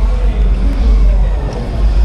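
Outdoor street ambience: a loud, uneven low rumble runs throughout, with faint voices of passers-by over it.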